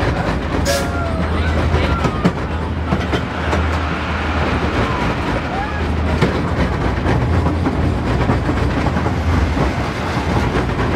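Joris en de Draak wooden roller coaster train rumbling steadily along its wooden track.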